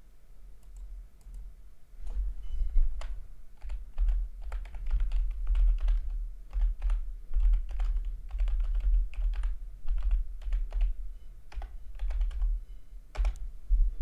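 Typing on a computer keyboard: a quick, irregular run of keystrokes starting about two seconds in, with a low thump under the strokes.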